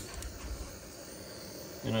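Handheld butane micro torch lit with a sharp click, then its flame hissing steadily while it heats heat-shrink butt connectors on radio wiring.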